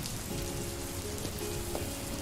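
Steady rain, an even continuous hiss of falling drops.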